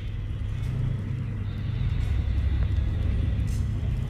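Low, steady rumbling drone of a Borg ship interior's ambience in a TV soundtrack.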